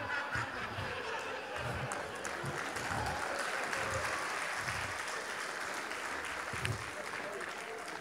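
Audience laughing and applauding at a stand-up comedy punchline, a steady mix of clapping and laughter that eases slightly near the end.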